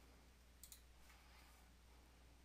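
Near silence with one faint computer-mouse click, a quick double tick, a little over half a second in.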